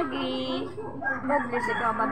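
A rooster crowing: one long call that rises at the start and is held for under a second.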